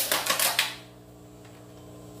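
Clear plastic takeout container's snap-on lid being pried open by hand, a quick run of crackling clicks in the first half second or so.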